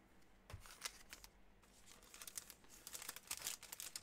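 Faint crinkling and handling noise, a scatter of soft crackles and ticks starting about half a second in, as cards and their packaging are handled.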